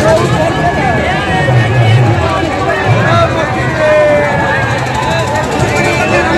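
Busy fairground crowd chatter over a low engine drone that swells and fades again and again, as cars or motorbikes circle the wall of a well-of-death show.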